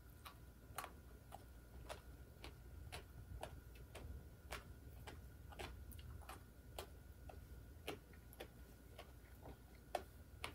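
Faint chewing of a mouthful of papaya salad: soft wet clicks about twice a second, slightly uneven in spacing.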